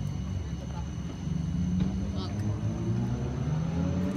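Car engine running with a low rumble that gets louder and rises slightly in pitch from about a second in, like a gentle rev.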